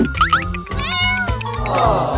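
A kitten meowing, with short rising mews followed by a longer falling mew, over background music.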